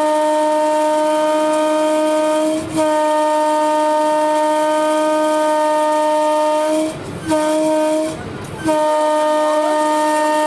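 Electric locomotive horn heard from the cab, blown in long steady single-pitched blasts: the first breaks off about two and a half seconds in, the next runs to about seven seconds, a short blast follows, and another long one starts shortly before the end.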